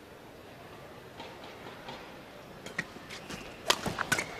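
Quiet hum of a large indoor arena with a few faint scattered clicks; near the end a sharp crack of a badminton racket striking the shuttlecock as a flick serve is played, and a second hit follows.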